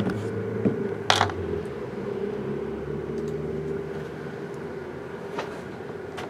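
Sealed card boxes set down flat on a table with a sharp knock, then a lighter knock and a brief scrape about a second in. A steady hum runs underneath.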